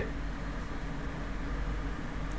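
Steady low hum and faint hiss of room tone, with no distinct events.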